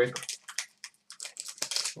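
Plastic wrappers of Upper Deck Series 1 hockey card packs crinkling and tearing as the packs are opened by hand, in a quick run of crackles, with cards being handled.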